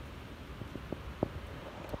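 Low, steady outdoor background rumble picked up by a phone's microphone while walking, with a couple of faint soft clicks about a second in.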